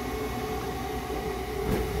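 Homemade five-gallon-bucket swamp cooler running: its 120 mm computer fan and small submersible water pump give a steady hum with a couple of held tones over a low rumble.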